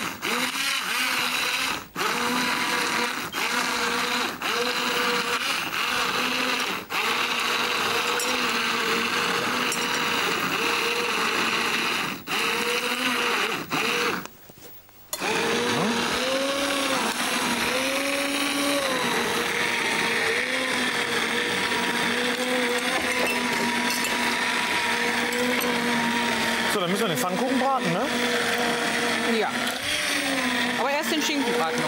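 Hand-held immersion blender puréeing a pot of beetroot soup: a steady motor whine whose pitch dips and wavers. It cuts out briefly a few times and stops for about a second halfway through before starting again.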